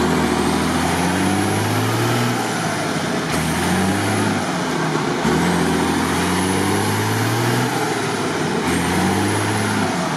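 Mercedes-Benz Unimog engine revving under load as the truck pushes through deep swamp mud, the revs climbing and falling back about four times, with a faint high whine rising along with each climb.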